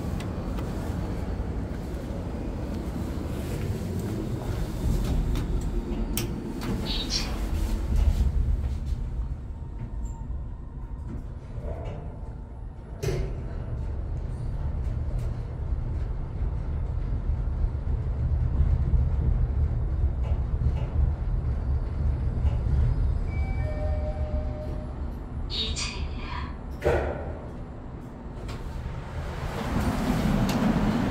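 A Hyundai passenger elevator ride: a steady low rumble as the car travels, with a few sharp clicks as the doors work and a few short tones near the end as it arrives.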